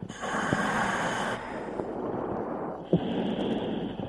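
A diver breathing in a dive helmet, heard over the diving radio: a hissing rush of air for about a second and a half, then a lower, quieter rush, with a click just before the end.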